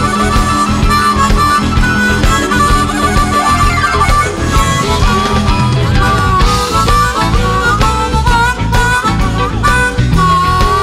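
Live blues band playing an instrumental section, with a harmonica carrying a melody whose notes bend in pitch, over electric guitars, drums and keyboard.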